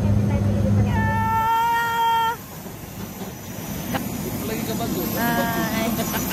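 Steady low drone of a turboprop airliner heard from inside the cabin, cutting off about a second and a half in. A held high-pitched note overlaps its end. Then comes quieter open-air background with a second short high-pitched call near the end.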